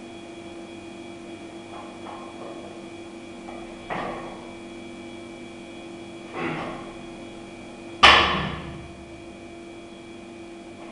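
Loaded barbell during a power snatch. A sharp thud about four seconds in as the lift is caught, a softer knock a couple of seconds later, then the loudest impact about eight seconds in as the bar is dropped to the floor, its plates ringing out for nearly a second. A steady electrical hum runs underneath.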